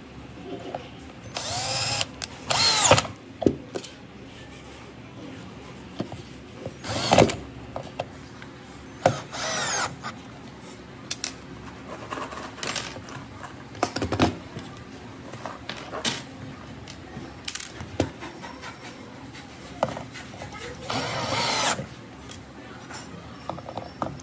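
DongCheng cordless drill-driver driving screws into a metal drawer lock plate in several short bursts, its motor whine rising and falling in pitch as each screw runs in. Small clicks and knocks come between the bursts.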